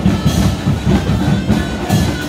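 A street band of drums and wooden flutes playing a march: a steady drumbeat about four strokes a second, with a thin flute melody held above it.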